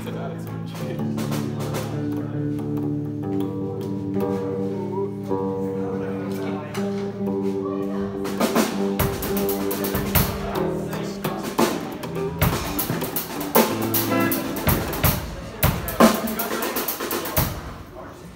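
Electric guitar and bass guitar warming up with held notes and chords. About halfway through, a drum kit joins with irregular kick and cymbal hits, which stop just before the end.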